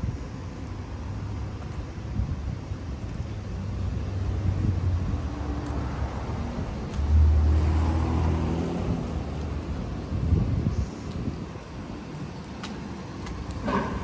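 A motor vehicle's engine running close by on the street, a low rumble that grows to its loudest about seven seconds in and then fades away, over steady traffic noise.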